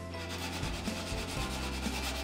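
Microfiber sponge scrubbing the wet, greasy glass and enamel of an oven door, a steady back-and-forth rubbing.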